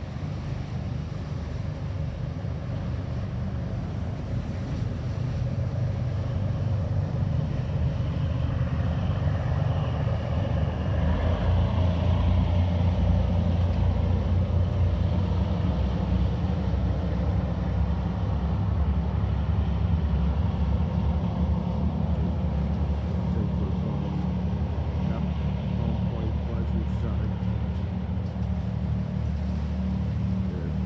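Engine rumble of the Norma-K III, a large party fishing boat, passing through the inlet under power. A steady low drone that swells to its loudest about halfway through, then eases slightly as the boat heads out.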